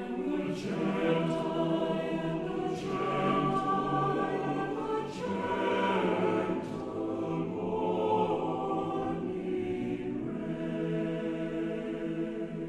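A choir singing a slow piece in long, sustained chords, with the singers' 's' sounds heard as brief hisses now and then.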